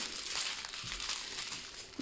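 Clear plastic bags of diamond painting drills crinkling as they are handled and laid out by hand.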